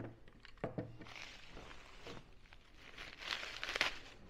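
Bubble wrap and plastic packaging crinkling and rustling as it is handled, with scattered light clicks. It grows louder near the end.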